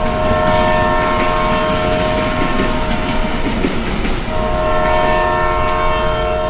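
Train sound effect: a passing train rumbling while its horn blows two long blasts, about a second and a half apart.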